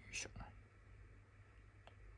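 Faint handling of a small plastic toy pen and a sticker under the fingers: a brief soft rustle just after the start, a smaller one about half a second in, and a light tick near the end.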